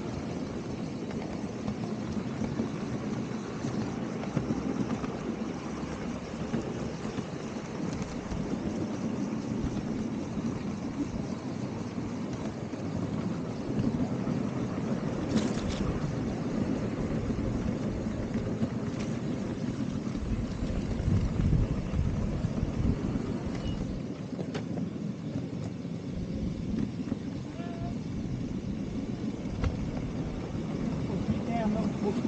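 Steady rumble of a miniature railway passenger car's wheels running along the track, with a few sharp clicks along the way.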